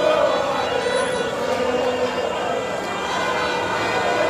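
A large crowd of football fans celebrating, many voices singing and shouting together at a steady loudness.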